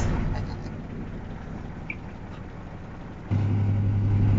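The diesel engine of a 1962 Mercedes-Benz 312 bus running with a low rumble. About three seconds in it suddenly becomes louder, a steady low idling hum.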